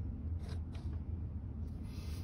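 Faint handling sounds, a couple of soft clicks about half a second in, as gloved hands move the parts of a large model rifling cutter, over a low steady hum.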